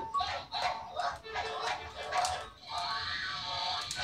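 Sound from a child's tablet: music with a string of short, yelping, dog-like calls, and a longer held note about three seconds in.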